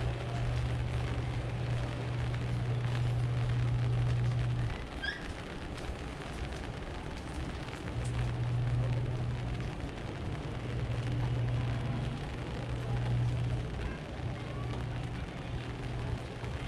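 A low, steady rumble over outdoor alley ambience. It breaks off suddenly about five seconds in and comes back in long stretches from about eight seconds on. A brief high chirp sounds about five seconds in.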